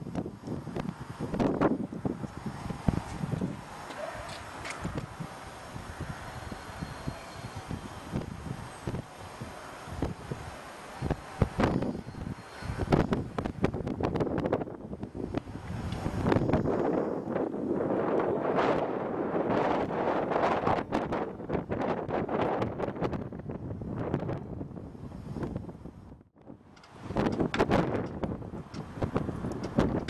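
Wind buffeting the microphone, with scattered short bumps, and a brief lull near the end.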